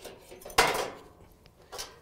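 Flathead screwdriver prying a dryer's high-limit thermostat off its sheet-metal burner-tube mount: a sharp metallic clack about half a second in, then a lighter click near the end as the thermostat comes loose.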